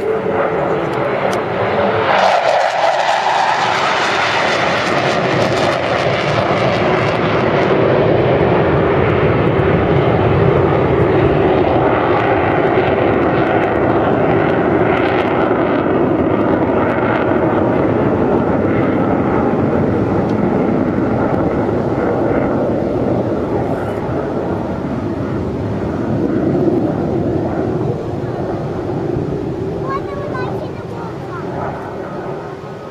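Hawker Hunter F.58A jet's Rolls-Royce Avon turbojet, loud and continuous as the aircraft flies its display. The sound swells sharply about two seconds in with a falling pitch as the jet passes, then holds as a sustained jet roar that eases slightly near the end.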